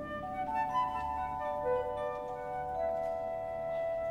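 Symphony orchestra playing softly in a slow classical passage: held notes enter one after another and overlap into a sustained chord.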